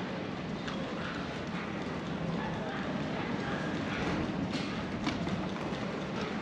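Wind buffeting the microphone, with irregular sharp knocks and clicks and voices in the background.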